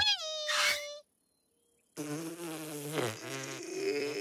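Cartoon soundtrack: a short pitched call that rises and then falls to a held note, then after a second of silence a steady buzzing hum.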